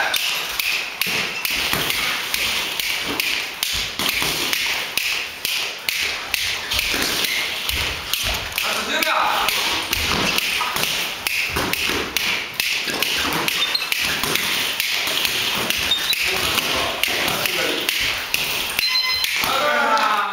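Gloved punches landing and feet shuffling on the ring canvas in boxing sparring: a fast, irregular run of taps and thuds over a steady hiss. Short electronic beeps sound near the end as the round timer runs out.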